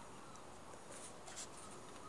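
Faint, steady background hiss with two soft, brief scratchy rustles, about a second and a second and a half in.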